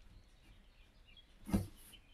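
Faint squeaks and scratches of a black felt-tip marker drawing on paper, with one short, louder thump about one and a half seconds in.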